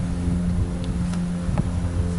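A steady low hum with several even overtones over a faint low rumble.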